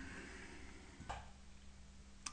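Faint room tone with a low steady hum, and one brief soft click about a second in.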